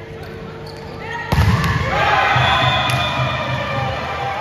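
A volleyball struck hard, a sharp smack about a second in, followed by players shouting and cheering loudly in an indoor hall as the rally ends.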